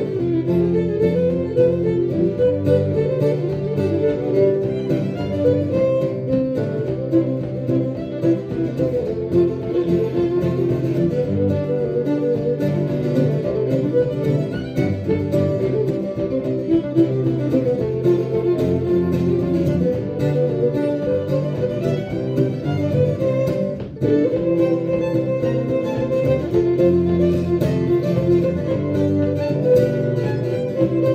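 Live fiddle, cello and acoustic guitar trio playing a traditional folk tune together, with a momentary dip about three-quarters of the way through before the playing carries on.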